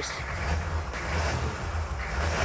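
A Humvee's 6.5-litre V8 diesel idling steadily, heard from inside the cab, still cold just after start-up.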